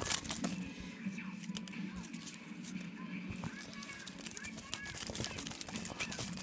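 Scrunched-up paper slips rustling and crinkling as a hand rummages through them in a cap, a run of small irregular crackles.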